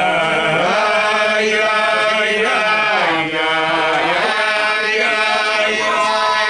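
Men singing a slow Hasidic niggun together, long held notes that glide slowly up and down.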